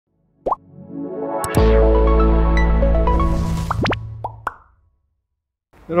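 Short intro music sting: a pop, then a held chord over a deep bass swell with a few quick upward bloop effects, fading out about four and a half seconds in. A man's voice starts right at the end.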